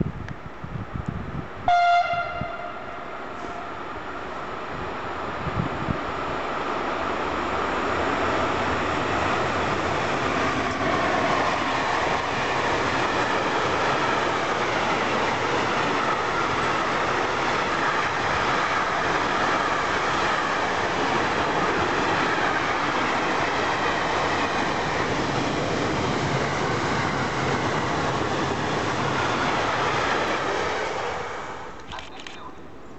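A train horn sounds one short blast about two seconds in. Then an intermodal container freight train approaches and passes at speed, its wheel and wagon noise building over several seconds and then holding loud and steady.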